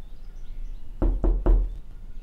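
Three quick knocks on a door, about a quarter second apart, the last the loudest.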